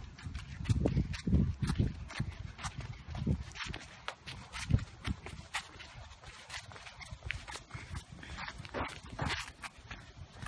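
Footsteps on a concrete sidewalk, a steady run of light clicks, with a few louder low thumps in the first few seconds.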